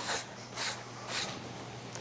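Quiet room tone: a low steady hum with a few faint soft noises about half a second apart.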